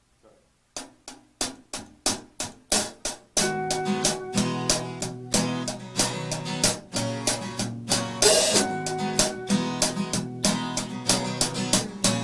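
A small live country band starting a song. About a second in come evenly spaced taps, growing louder. Then, about three seconds in, electric guitar, acoustic guitar and drums come in together and play on at a steady beat.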